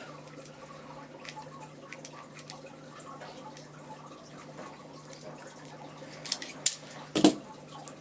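Hand crimping tool being squeezed onto a distributor-end connector of a copper-core HT lead: faint small ticks and rubbing over a low steady hum, then a few sharp clicks near the end as the crimp is finished.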